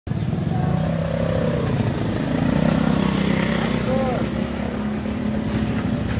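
An engine running steadily close by, its pitch shifting a little, with people's voices talking faintly over it.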